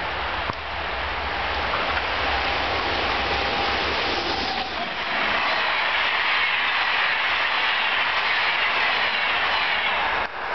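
NS Class 1700 electric locomotive hauling ICRm intercity coaches, passing at speed. The noise builds as the train approaches, and from about five seconds in the coaches go by with a loud, steady rush of wheels on rail.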